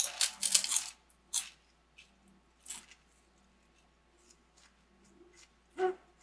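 Crunchy pork rinds bitten and chewed: a dense run of crackling crunches in the first second, then a few single crunches that grow fainter.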